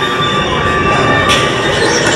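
Revenge of the Mummy coaster car rolling on its steel track: a loud, steady rumble with thin steady high tones over it. A hiss joins about a second in.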